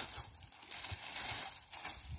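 Dry plant stalks rustling and crackling faintly in short bursts as they are handled and laid over a planted bed as mulch.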